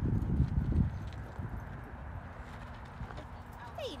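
Dull low thuds on the microphone, strongest in the first second, fading into a steady low outdoor rumble. Near the end there is a brief falling, squeaky voice-like sound.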